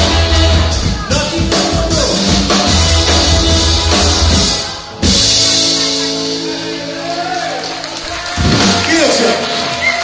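Live rockabilly band with upright bass, electric guitar, saxophone and drums playing the end of a song. The beat stops about five seconds in, a crash lands and a long final chord is held, and a voice comes in near the end.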